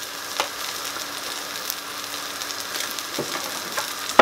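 Black bean burger patties sizzling steadily in hot oil in a frying pan, with a couple of faint clicks.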